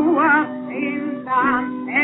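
Old 1918 acoustic recording of a Yiddish theater song: a male voice singing short notes with wide vibrato over a steady accompaniment. The sound is thin, with no top end.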